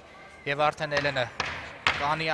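A man's voice speaking for about a second after a short pause, followed by a single sharp knock near the end.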